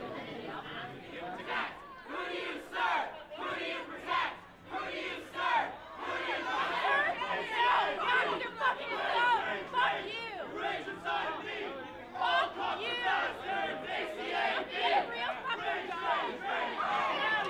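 A crowd of protesters shouting over one another, many raised voices at once with no single voice standing out.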